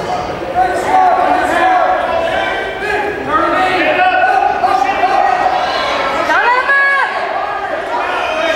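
Indistinct overlapping voices of spectators calling out and chattering, echoing in a large gym hall, with one voice rising into a loud drawn-out shout near the end.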